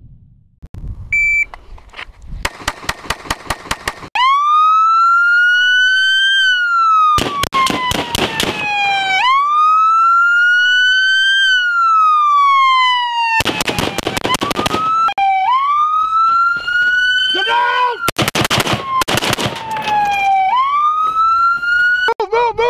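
Police car siren sounding, cycling between long wails that rise and fall slowly in pitch and stretches of fast pulsing, with a short beep about a second in.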